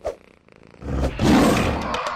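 A tiger's roar as a sound effect, rising about a second in and dying away near the end, after a brief thump at the very start.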